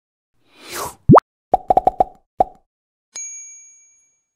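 Cartoon logo-animation sound effects: a short whoosh, a loud quick rising pop, then a rapid run of about six short pops. Near the end a bright chime rings out and fades.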